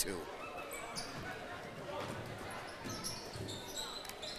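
Basketball game sounds in a gymnasium: the ball bouncing on the hardwood court with faint crowd chatter in the hall.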